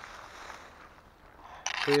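Soft rustling of footsteps through dry fallen leaves and grass on a forest floor, with a brief louder rustle near the end. A man's voice starts right at the end.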